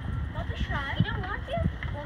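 A large dog "talking": short warbling whine-like vocalizations that swoop down and up in pitch, about half a second in and again near the end, with two low knocks in between.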